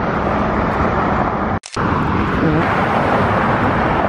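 Steady street traffic noise, cut off for a moment about a second and a half in.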